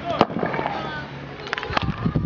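Hard cracks of field hockey balls being hit by sticks and striking the goalkeeper's pads. One loud crack comes just after the start and a quick cluster of several comes near the end.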